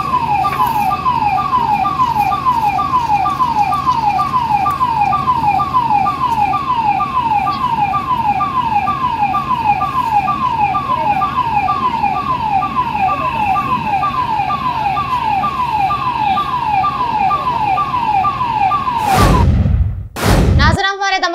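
Fire engine's electronic siren sounding a fast, repeating falling wail, nearly two sweeps a second, steady over a low hum. Near the end it gives way to a loud whoosh.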